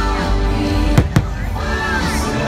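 Two aerial firework shells bursting as sharp bangs, a fifth of a second apart, about a second in, over loud show music.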